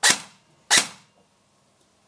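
Bolt BR4 Elite Force airsoft electric rifle with the Bolt Recoil Shock System firing two single shots a little under a second apart, each a sharp crack that dies away quickly. It is fired dry, with no BBs loaded.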